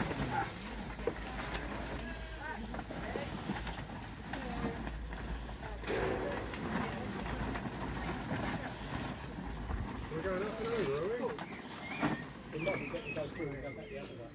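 Indistinct voices of several people talking at a distance, over a low steady rumble.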